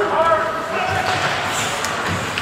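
Ice hockey play in a rink: raised voices calling out from players or spectators in the first half second, then sharp clacks of sticks and puck about three-quarters of the way through.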